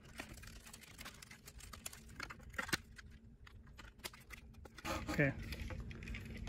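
Quiet, scattered clicks and taps of hand handling: a plastic LED wingtip light being set against a molded carbon-fiber wingtip and its taped-on mounting bracket for a fit check.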